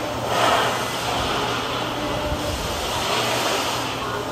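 Steady vehicle engine noise, with a brief swell about half a second in.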